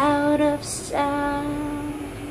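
A woman singing solo, two held notes: a short one, then a hissy 's' consonant, then a longer note.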